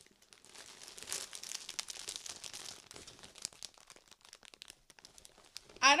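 A shiny plastic gift bag and a plastic-wrapped plush toy crinkling and rustling as they are handled, in a fairly quiet run of irregular crackles.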